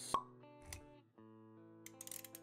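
A sharp pop sound effect just after the start and a lower thump about a third of the way in, over quiet background music with held notes.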